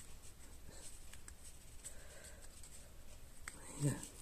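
Faint rustling and light ticks of cardstock being handled, as a paper leaf is slipped in between paper flowers on a wreath.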